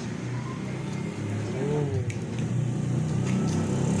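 A motor vehicle engine running nearby, its low hum slowly growing louder toward the end.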